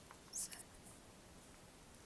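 Near silence: faint room hiss, broken once about half a second in by a short soft-spoken "So".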